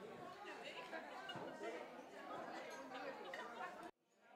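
Faint, indistinct chatter of several people talking at once around a dining table; it cuts off abruptly near the end.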